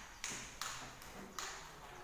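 Footsteps on a stone floor: three short scuffs in the first second and a half, spaced unevenly.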